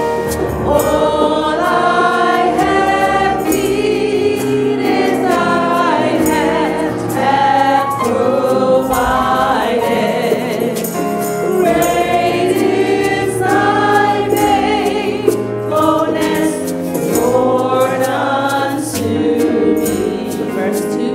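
Gospel praise-and-worship singing by a group of voices, led on microphone, accompanied on a Yamaha MODX keyboard, with long held sung notes moving through a melody.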